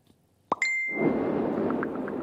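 A broadcast graphics transition sound effect: a quick rising swoosh about half a second in, then a bright ding that rings briefly, followed by a steady rushing noise.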